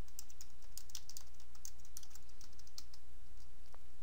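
Typing on a computer keyboard: a quick, irregular run of keystrokes as a short phrase is typed and Enter starts a new line, over a steady low hum.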